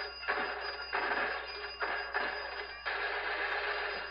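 Cartoon gunfire sound effects: four bursts of rapid shots, each breaking out suddenly and dying away, over an orchestral score.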